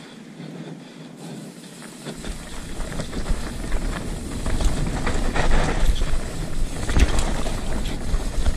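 Wind buffeting an action camera's microphone while a hardtail mountain bike rolls down a dirt trail, with a rattle of clicks and knocks from the bike over the rough ground. The rumble gets much louder about two seconds in.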